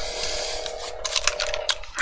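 Several irregular light clicks and taps, over a faint steady hum.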